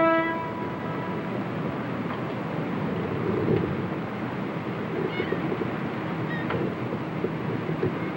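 A boat's horn holding one steady, many-toned note that cuts off about half a second in. It is followed by a steady low rumble and hiss.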